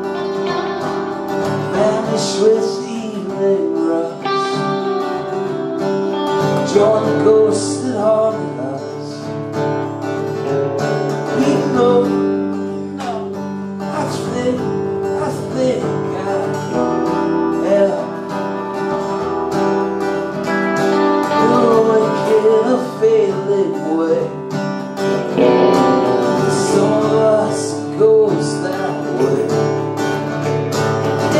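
Acoustic guitar strummed alongside an electric guitar playing lead lines, in a live two-guitar performance of a slow song.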